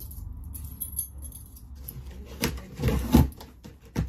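Handling noise: a string of small clicks and light clinks as small objects are handled in the hands, then a few louder rustles and knocks about two and a half to three and a half seconds in.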